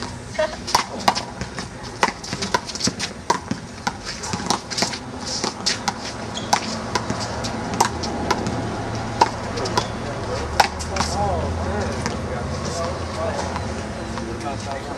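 Handball rally: sharp slaps of the small rubber ball off players' hands and the wall, roughly one or two a second, with sneakers scuffing on the court. Indistinct voices and a low hum come in during the second half.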